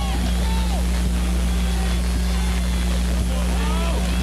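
A steady low hum runs throughout, a few even pitched tones like electrical hum on the audio feed. Faint distant voices from the crowd and the field sound over it.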